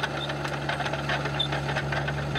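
Diesel engine of a Komatsu D51EX crawler bulldozer running steadily, a constant low hum under an even, rapid clatter.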